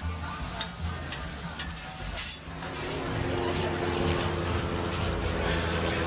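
Food sizzling on a flat-top griddle, with the scrape and tap of a metal spatula working it. About two and a half seconds in, music with steady held notes takes over.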